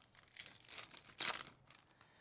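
Foil wrapper of a Panini Mosaic basketball card pack crinkling in the hands as the cards are taken out, in a few short rustles, the loudest about a second and a quarter in.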